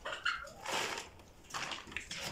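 A few short animal calls and cries: a brief pitched call, then several rougher ones.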